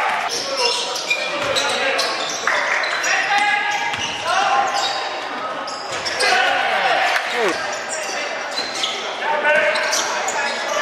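Basketball game in an echoing gym: the ball bouncing on the wooden court, sneakers squeaking, and indistinct voices of players and spectators calling out throughout.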